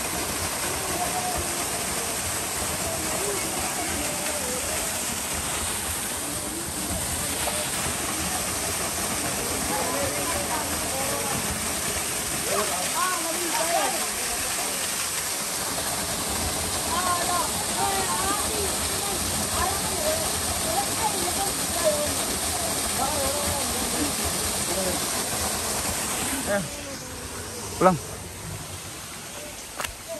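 Small waterfall pouring onto rock in a steady rush, with men's voices faintly audible over it. Near the end the rush of water falls away, and a single sharp knock follows.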